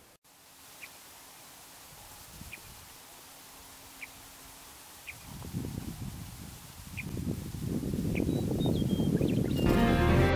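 Outdoor ambience: wind buffeting the microphone, growing stronger from about halfway through, with a few faint, short bird chirps spaced a second or more apart. Music starts right at the end.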